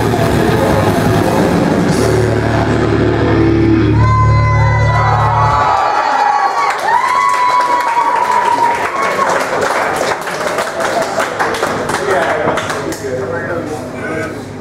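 A metal band live on stage ending a song: a heavy held low chord cuts off about six seconds in, sustained ringing guitar tones carry on for a few seconds, and then the crowd cheers and claps.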